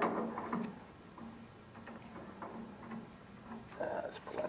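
Faint scattered clicks of a hand wrench working at the riding mower's oil drain fitting, with some louder metal handling in the first half second.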